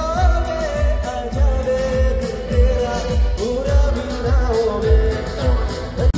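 Live band playing a Bollywood song: a woman sings a high, ornamented melody over a steady drum beat of about two thumps a second, with band accompaniment.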